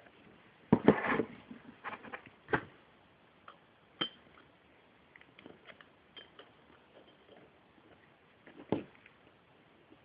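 Metal clicks and clinks of connecting-rod bearing shells and steel rod end caps being handled on a bench, as a shell is pressed into its cap: a cluster of knocks about a second in, sharper single clicks a little later, light ticks through the middle, and one more knock near the end.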